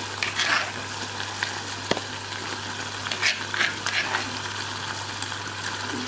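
Tomato-and-egg stew sizzling steadily in a saucepan while a spoon scrapes blended garden egg paste into it, with a few short scraping strokes and one sharp click about two seconds in.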